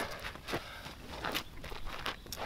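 A few irregular footsteps and scuffs on gravelly dirt ground as a person steps over and sits down.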